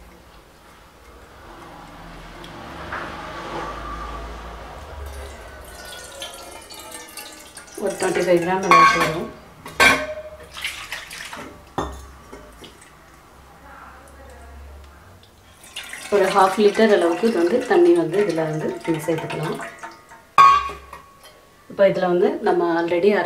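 Tamarind water being poured from a steel bowl into a steel pot: a soft splashing pour lasting several seconds, its pitch rising slightly as the pot fills. A voice follows.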